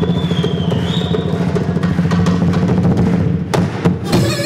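Live Bushehri percussion: drums played in a fast, dense pattern over a sustained low note, with one sharp hard strike near the end. A brief high gliding whistle-like tone sounds about a second in.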